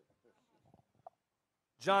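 Near silence in a pause between words, with only a faint short blip about a second in; a man's voice starts speaking into a microphone near the end.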